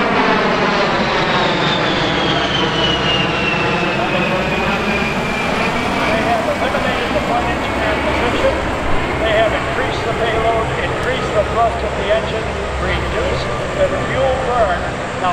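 An A-10 Thunderbolt II's twin General Electric TF34 turbofans passing by in flight. The high fan whine falls in pitch over the first several seconds as the jet goes past, then gives way to a steady engine rumble.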